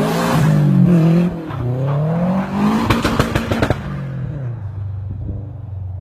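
Car engine revving up and down several times, with a quick run of sharp cracks about three seconds in, then settling to a steadier lower note that fades away.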